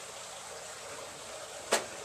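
Steady background hiss, broken near the end by one sharp knock.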